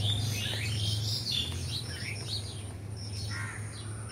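Small birds chirping and calling, many short notes and quick gliding chirps, with a run of rapid repeated high notes near the end, over a steady low hum.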